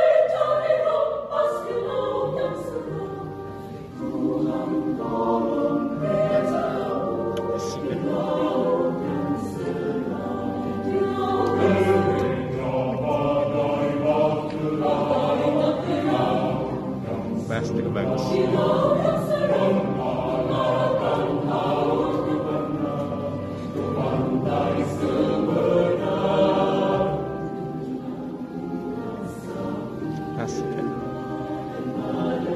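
Mixed choir of men's and women's voices singing in parts, with electronic keyboard accompaniment. The singing dips briefly about four seconds in.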